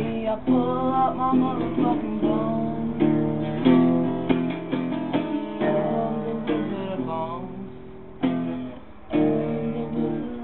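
Acoustic guitar being strummed in chords, with a voice singing along in places; the playing thins out near the end before two fresh strums.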